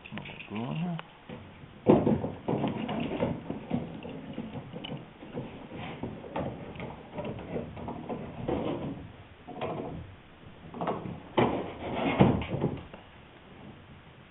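A steel C-clamp being set over a wooden boat rail and hull edge, with its screw turned down by hand. The sound is irregular metal clinks, knocks on wood and scraping of the screw, with a sharp knock about two seconds in and another loud cluster near the end.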